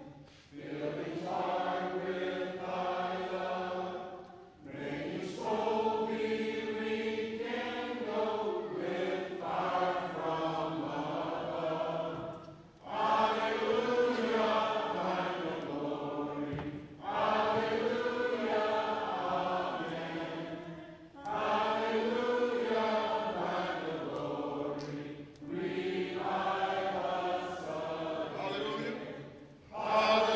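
Slow singing in long held phrases of about four seconds each, with short breaks for breath between them, typical of a hymn sung during a church service.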